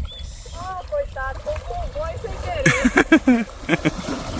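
A person talking, with a louder stretch about three seconds in, over a low steady rumble.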